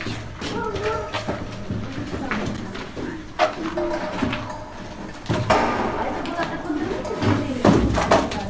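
A man's voice speaking, with no clear non-speech sound.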